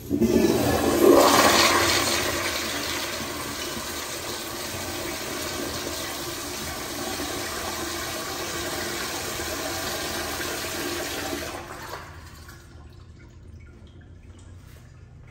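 Toto CT705E toilet bowl flushed by its flushometer valve: a sudden loud rush of water, strongest in the first two seconds, then a steady rush that cuts off fairly abruptly about twelve seconds in.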